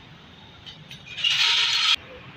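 A loud, short burst of hiss, starting about a second in and lasting under a second before it cuts off abruptly.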